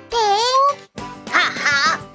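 A squeaky cartoon character voice making a wordless exclamation that dips and then rises in pitch, followed about a second later by a few short wavering calls, over children's background music.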